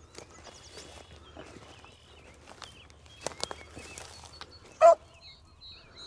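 A beagle running a rabbit gives one short, loud bark about five seconds in. Just before it come a few sharp cracks like brush or footsteps, and birds chirp faintly in the background.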